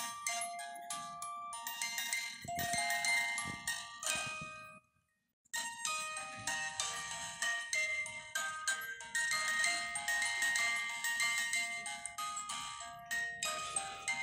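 A mechanical music box plucking a tune in short, high, ringing notes. The tune cuts out to silence for under a second about five seconds in, then carries on.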